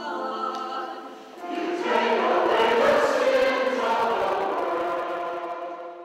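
Choir singing in sustained chords, swelling louder about a second and a half in, then fading out at the end.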